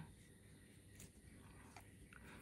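Near silence: room tone, with two faint short clicks, one about a second in and one near the end.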